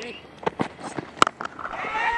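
A few sharp knocks, the loudest just past a second in: a cricket bat striking the ball.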